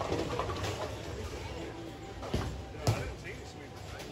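Busy bowling-alley din: a murmur of voices, with two sharp knocks about half a second apart a little past the middle, the second louder.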